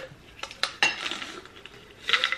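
Hard plastic vitamin bottles and small pill containers handled on a table: a few sharp clicks and knocks, then a short rattle about a second in.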